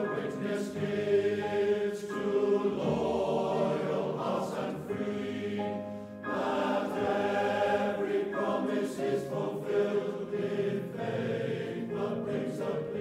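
Choral music: a choir singing slow, held phrases, with a brief break between phrases about six seconds in.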